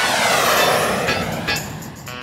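A whoosh transition effect that swells and fades, with a sweeping, jet-like tone, over background music.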